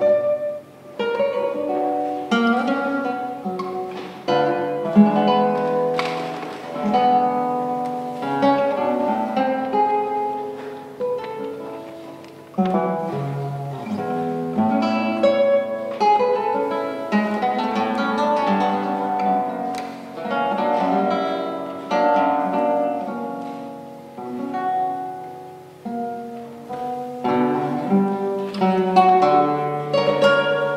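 Solo classical guitar, a Stephan Connor nylon-string instrument, fingerpicked: a melody over bass notes and chords in phrases that swell and fade, with a sharp strummed chord about six seconds in.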